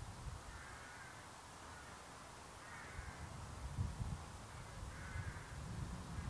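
A crow cawing three times, about two seconds apart, over a low rumble that grows louder near the end.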